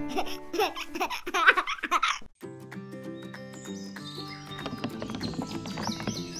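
Title-card jingle: a baby giggling and laughing over a cheerful children's tune for about two seconds, a brief break, then the bright tune carries on alone.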